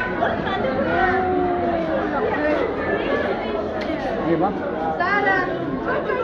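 Indistinct chatter of many people talking at once, with overlapping voices throughout and no single speaker standing out.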